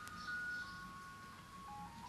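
Faint room tone with a few thin, steady pure tones that step down in pitch one after another, like a slow tune.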